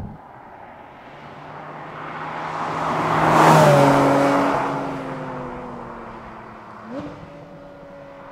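Porsche 718 Cayman GT4 RS, with its naturally aspirated 4.0-litre flat-six, driving past: the sound builds to a peak about three and a half seconds in, then the engine note drops in pitch and fades as the car moves away. About seven seconds in, the engine pitch briefly rises again.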